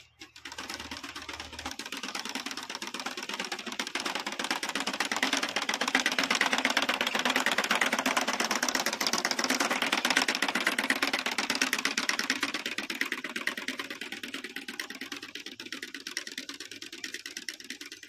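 Hand-pushed roller seed planter clicking and rattling rapidly and steadily as its seed wheel turns while it is rolled over loose soil, growing louder a few seconds in and easing off near the end.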